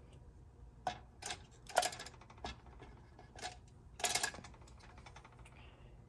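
Several light metallic clinks and taps, scattered irregularly and loudest about four seconds in, from an aluminum lure mold and its handles knocking against a lead pot while molten lead is poured into the mold.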